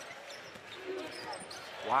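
Basketball being dribbled on a hardwood arena court, with low crowd noise from the arena behind it.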